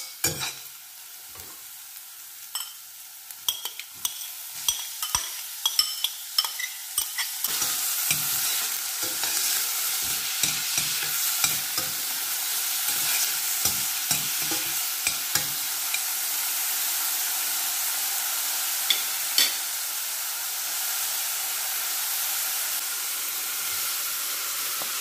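Minced garlic sizzling in olive oil in a stainless steel saucepan, with scattered crackles and pops. About seven seconds in the sizzle turns into a louder steady hiss as chopped onion goes into the hot oil, and a spoon scrapes and stirs the pan repeatedly.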